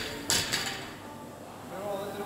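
A sharp, noisy burst about a third of a second in that dies away within half a second, over faint voices in a large, echoing gym.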